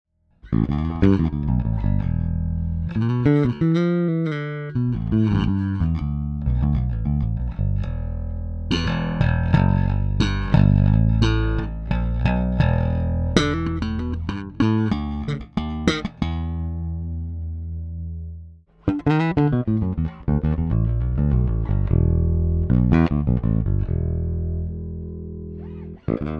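Four-string Maruszczyk Elwood L4a-24 electric bass with Delano JSBC 4 HE pickups and a Sonar 2 preamp, played fingerstyle as a line of plucked notes, first through both pickups and later through the bridge pickup alone. About 17 seconds in a held note rings out and fades, and after a short break the playing resumes.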